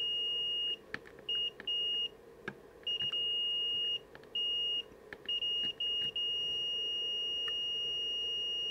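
A multimeter's continuity beeper sounds one steady high tone in short, irregular beeps as the probe tips touch and slip on ground points on a circuit board. From about six seconds in it holds one long unbroken beep: the probes have found a solid connection to ground.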